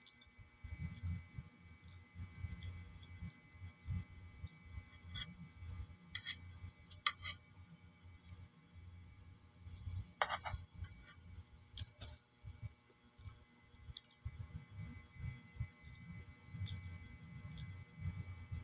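A metal spoon clicking against a plastic plate about seven times, with a low, uneven rumble of handling noise between the clicks.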